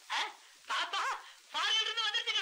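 A man laughing in three bursts, the last one long with a high, wavering pitch.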